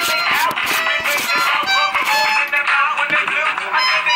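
Background music with a beat, drums and pitched melodic instruments playing throughout.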